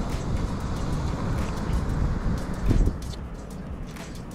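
Wind buffeting the microphone in an irregular low rumble, over the wash of surf, with one thump about three quarters of the way through.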